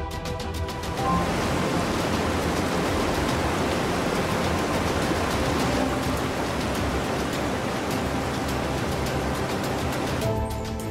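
Steady rush of falling or breaking water, starting suddenly about a second in, over background music.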